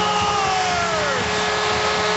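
NHL arena goal horn sounding over a cheering home crowd just after a goal, several held tones with one sliding down in pitch about half a second to a second in.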